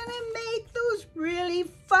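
A woman's voice singing a short phrase of a few held notes.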